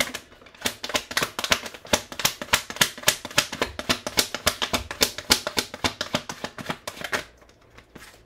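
Tarot cards being shuffled and dealt onto a tabletop: a quick, uneven run of sharp card clicks and slaps that stops about seven seconds in.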